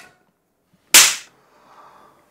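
A single sharp slap, a hand striking a face, about a second in.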